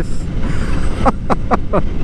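Motorcycle riding at road speed: a steady rumble of engine and wind buffeting on the helmet microphone, with a few short bits of the rider's voice a second or so in.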